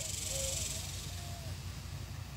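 Outdoor background noise in a pause between words: a steady high hiss with a low rumble underneath.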